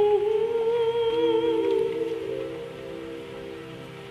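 A woman's voice holding one long sung note over a karaoke backing track; the note fades away about two seconds in, leaving the soft accompaniment.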